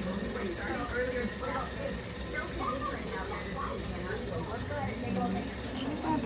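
Faint voices in the background over a steady low hum.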